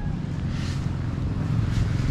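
A steady low rumble, with two faint brief rustles about half a second and nearly two seconds in.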